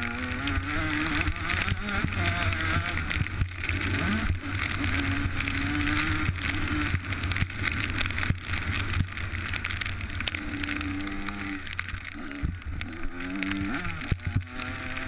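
Motocross dirt bike engine heard from an onboard camera, revving up and backing off several times as the rider goes through the gears, with a loud steady rushing noise over it from wind on the microphone.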